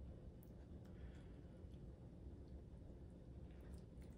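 Near silence: room tone with a low hum and a few faint light clicks.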